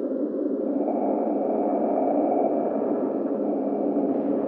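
Dark ambient drone: a steady droning hum in the low-mid range, with a faint high tone above it. The drone swells about a second in and eases off near the end.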